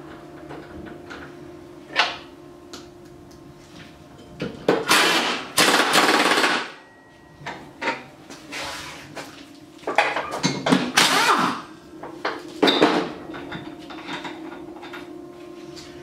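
Impact wrench with a 5/8-inch socket running the new blade bolts onto a mower deck's spindles, in several bursts of one to two seconds, with sharp metal clicks between and a faint steady hum underneath.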